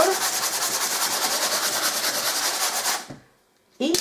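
Sanding block rubbed back and forth over dried joint filler on a papier-mâché-covered cardboard surface, in quick, even strokes. The sanding stops about three seconds in.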